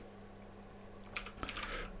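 Computer keyboard typing: a quick run of keystrokes in the second half, after about a second of near quiet.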